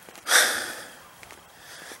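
A single sharp breath, a snort or quick exhale, from the person holding the camera close to the microphone, starting about a quarter second in and fading over about half a second.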